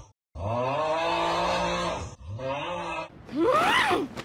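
Cartoon character's exaggerated voiced snoring: a long, drawn-out groaning snore, then a shorter one. About three seconds in, a loud shriek rises sharply in pitch.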